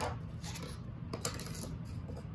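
Faint rustling of yarn and cardboard being handled, with a few light clicks.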